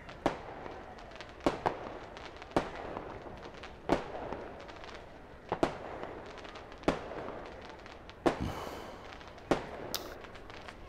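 A series of about ten sharp bangs at irregular intervals, roughly one every second, each trailing off in a short echo, over a low steady background.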